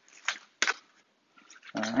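Plastic bag crinkling as it is handled, in two brief rustles within the first second.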